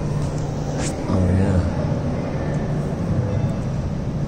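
Steady low hum in a public indoor space with indistinct background voices; a voice is briefly louder about a second in.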